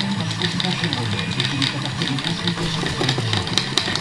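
Small electric motors of a homemade Arduino robot running in fits, with a voice talking underneath. The robot acts up because of a loose, partly desoldered power wire.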